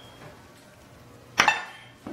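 Quiet room tone, then about one and a half seconds in a single sharp knock of an object set down on a stone countertop, with a brief ringing tail.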